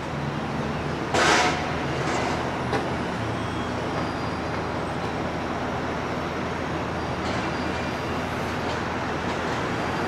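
Steady downtown street traffic noise, with a brief loud hiss about a second in.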